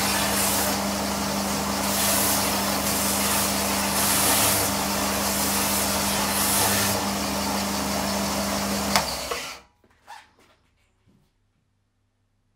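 Bench belt sander running with a steady motor hum, rasping louder each time the edge of a thin MDF board is pressed onto the belt, about five times. After a sharp click it cuts off abruptly about nine and a half seconds in, leaving a few faint knocks.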